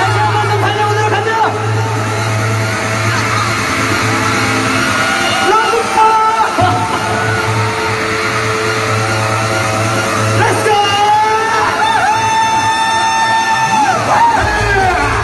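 Live pop concert music over the arena sound system, with amplified voices singing and calling over it, picked up by a camera in the audience.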